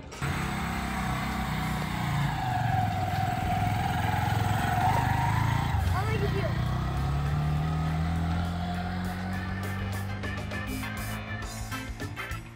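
A motorcycle engine running as the bike pulls away and rides off, mixed with background music.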